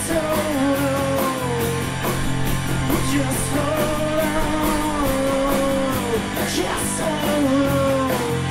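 Live rock band playing: drums with a steady run of cymbal hits, bass and electric guitar under a long, bending melodic line.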